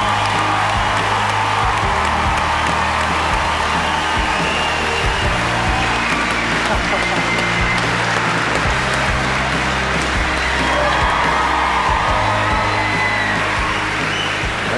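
Background music with a steady, sustained bass under a large theatre audience cheering and applauding.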